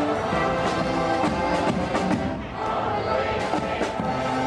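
Mummers string band playing a tune on the march: saxophones, banjos and accordions over a steady beat, briefly softer a little past halfway.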